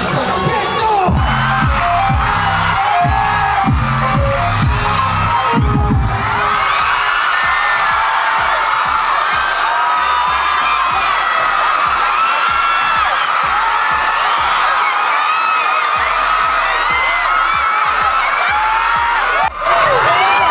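Live pop music with a heavy bass beat that stops about six seconds in, followed by a large crowd of fans screaming and cheering.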